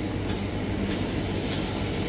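Automatic glue-laminating toilet paper making machine running: a steady low mechanical hum with a short swishing stroke repeating about every 0.6 seconds.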